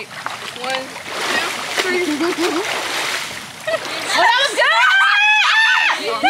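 Pool water splashing as people in the water shift and climb onto each other's shoulders. Near the end come loud, long, high-pitched yells from several women as one of them stands up.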